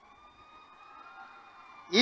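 A faint, steady high whine made of several pitches, one of which slowly rises and falls, heard in a pause of a man's amplified speech. The speech starts again just at the end.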